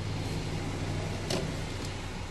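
Steady low hum of an idling car heard from inside the cabin, with one brief faint click a little past halfway.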